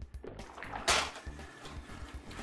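Background music with a steady low bass line, over the wet sounds of a silicone spatula stirring beef tips in gravy in a skillet, with one short, louder stroke about a second in.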